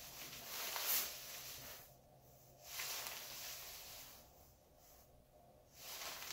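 Hood and shell fabric of an Eddie Bauer BC Evertherm down jacket rustling softly as the wearer turns his head: about two seconds of rustle, a pause, then another second and a half.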